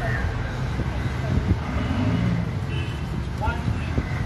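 Outdoor background noise: a steady low rumble with faint voices, and a few short high chirps in the second half.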